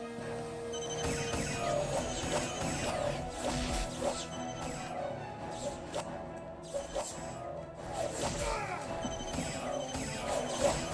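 Soundtrack of a TV action scene: repeated crashes and sharp hits over background music.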